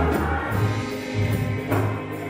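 Gospel choir singing with instrumental backing: a low bass line that moves between held notes and a beat that lands about once a second.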